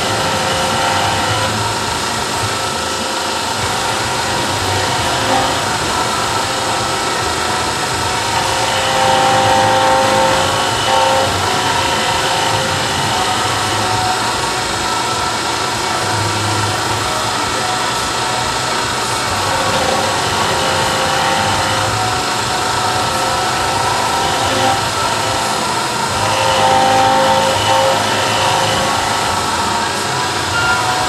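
CNC milling machine cutting solid steel under flood coolant: a steady spindle and cutter whine over the splash of coolant, its pitch strengthening now and then as the cutter works along the part.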